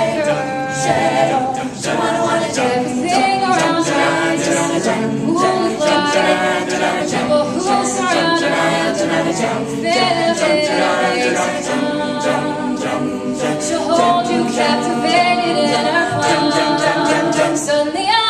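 Mixed a cappella group singing, with no instruments: a female lead voice over backing singers' rhythmic vocal accompaniment.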